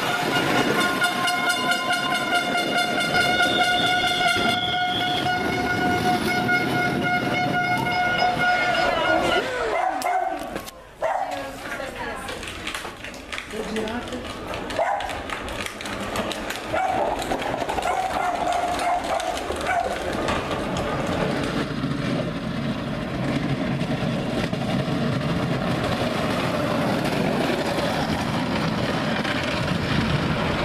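A long, steady horn-like tone for about nine seconds that slides down in pitch and stops. It is followed by mixed noises and then a steady rushing noise.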